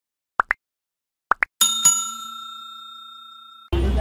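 Sound effects of a like-and-subscribe animation: two pairs of short rising blips, then a single bell ding that rings and fades away over about two seconds.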